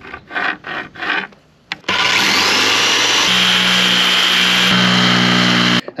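A pencil scratching in short strokes as it traces along a plate edge, then from about two seconds in a power tool running steadily as it cuts through an HDPE plastic board, its pitch shifting a couple of times before it cuts off just before the end.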